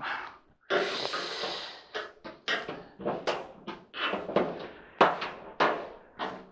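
Screwdriver prying and scraping against the dryer's sheet-metal cabinet top: a longer scrape about a second in, then a run of short scrapes and knocks about twice a second.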